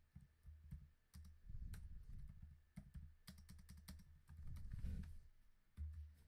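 Typing on a computer keyboard: quiet, irregular key clicks, with a quick run of keystrokes about three seconds in.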